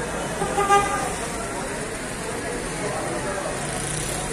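A car horn gives one short toot about half a second in, over steady crowd chatter and traffic.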